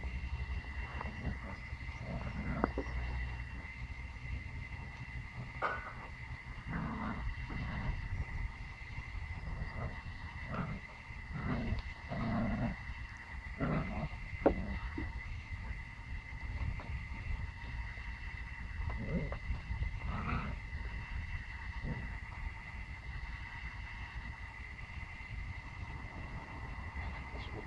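Pomsky puppy growling in short, irregular bursts as it tugs on a leash, most of them about a quarter to halfway in, with a few more later.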